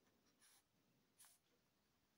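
Faint scratching of a pen writing on notebook paper, two short strokes, about half a second in and just after one second.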